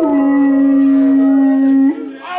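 A man's voice through a microphone and PA, holding one long steady note, almost a howl, which flicks upward and cuts off just before the end.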